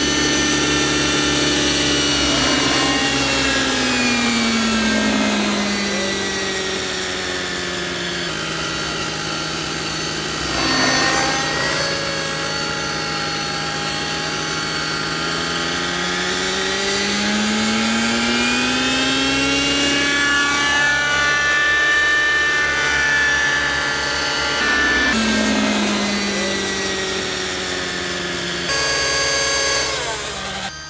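Radio-controlled model helicopter in flight, its rotor and drive giving a high whine whose pitch slides down and back up several times as it manoeuvres. There is a brief louder rush about eleven seconds in.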